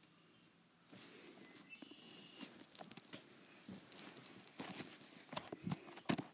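Faint handling noise of a phone held against couch upholstery: fabric rubbing with scattered soft knocks and clicks, busier after about a second.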